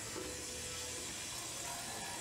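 Water running steadily from a kitchen tap into the sink, a constant hiss.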